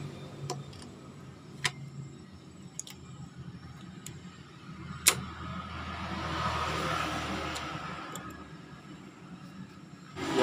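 Scattered sharp metal clicks as gearbox parts are handled and set into a motorcycle's aluminium crankcase, the loudest about five seconds in. A passing vehicle's noise swells and fades in the background in the second half.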